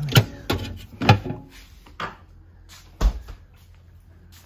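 A few sharp knocks and clunks of frozen food and the freezer being handled, about five over four seconds; the last one, about three seconds in, is a heavier thud.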